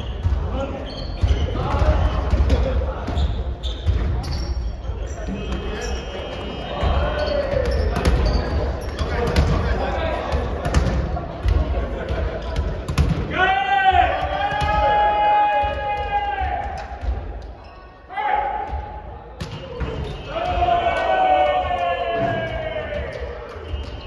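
A volleyball being struck by hands and hitting the wooden floor again and again, in a gym with hall echo. Players' voices call out over it, with long drawn-out shouts about 14 seconds in and again near the end.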